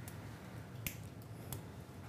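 A few faint, sharp clicks around the middle over a low steady hum, from endoscopic surgical instruments being worked into the disc of a plastic spine model.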